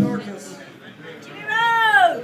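A high, wailing voice gives one short cry that rises and falls in pitch like a meow, about a second and a half in.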